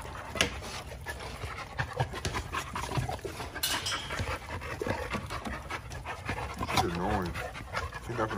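Several American bully dogs panting and play-fighting, mouthing at each other's faces amid irregular snuffles and scuffling. A short wavering voice rises and falls near the end.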